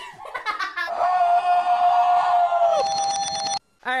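A woman laughs briefly. Then a steady, high electronic alarm-like tone sounds for about two and a half seconds, turns into a fast ringing near the end, and cuts off suddenly.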